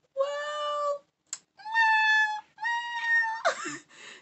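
A young woman's high-pitched, drawn-out whining vocal sounds in place of words: three held notes, the first lower and the next two higher, followed by a short rougher sound near the end.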